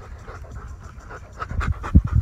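A Weimaraner–Labrador mix dog panting rapidly and rhythmically close to the microphone, breathing hard from running play. The panting grows louder in the second half.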